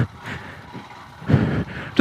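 Royal Enfield Himalayan's single-cylinder engine running faintly under wind noise as the bike rides along, with a brief louder swell about a second and a half in.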